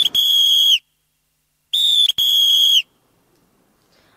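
A whistle blown in two signal calls, each a short blast followed at once by a longer one on the same steady high note that drops slightly as it ends.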